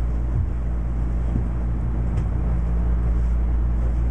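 Steady low hum and rumble of background room noise, unchanging throughout, with a faint knock about half a second in.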